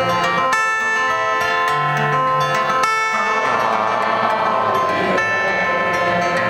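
Solo acoustic guitar playing live: chords strummed and left to ring, with a new chord struck several times, without singing.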